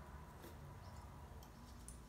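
Near silence: faint low room hum with a few soft mouth clicks from chewing a taffy-like candy.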